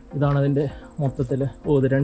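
A person speaking three short phrases over a steady, high-pitched trill of crickets.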